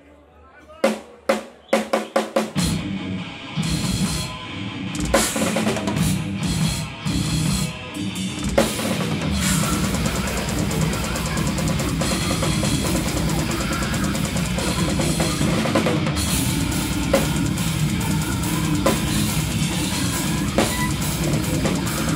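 Live brutal death metal heard through close drum-kit microphones. A handful of sharp drum hits come about a second in, then the full band enters at about two and a half seconds. From about nine seconds on, a fast, unbroken double-bass kick drum drives the music.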